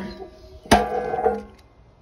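Steel firebox lid of an offset barbecue smoker clanging shut a little under a second in, the metal ringing for about three-quarters of a second.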